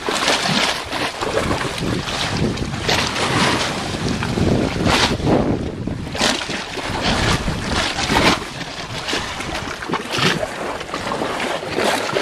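Shallow seawater sloshing and lapping against an undercut limestone rock ledge, coming in irregular splashy surges about every second or two, with wind buffeting the microphone.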